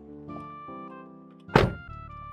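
The driver's door of a Toyota Corolla slamming shut once, about one and a half seconds in, with a single loud thud over background music.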